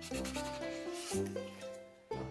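A cloth rag rubbing across a painted wooden sign, wiping it down, with the scrubbing stopping a little past halfway. Background music with plucked-string notes plays throughout.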